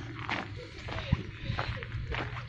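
Background chatter of people talking, with scattered light ticks and knocks.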